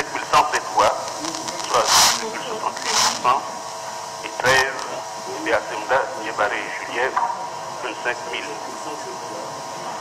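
Speech: a voice reading aloud in French, over a steady hum and hiss.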